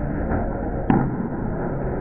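Candlepin bowling alley din: a ball rolling down the wooden lane over the alley's steady background noise, with one sharp clack about a second in.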